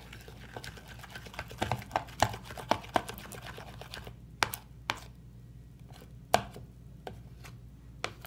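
Plastic spoon stirring thin, runny slime in a plastic bowl: quick clicks and taps of spoon against bowl, busiest in the first half, then a few sharper knocks.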